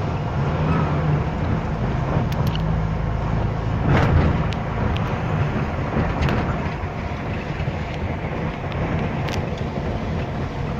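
Road and engine noise from inside a moving car: a steady low rumble with a few faint ticks, swelling briefly about four seconds in.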